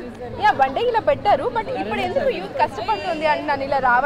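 Speech only: several young people talking over one another in lively chatter.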